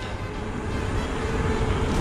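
Wind rushing over the action camera's microphone, with knobby tyres rolling on asphalt as the e-mountain bike rides along a paved road; the noise grows slightly louder.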